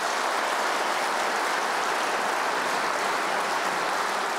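Large audience applauding, a dense and steady clapping.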